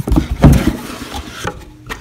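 Cardboard box lid being opened and the box handled: a cluster of dull knocks and thumps in the first second, the loudest about half a second in, then another knock about a second and a half in.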